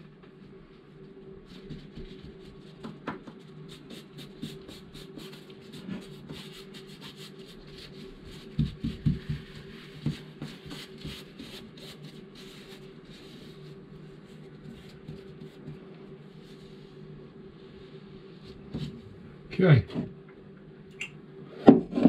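Gloved fingers rubbing and pressing peel ply down onto wet epoxy filler: a long run of quick faint crackles and scratches over a steady low hum.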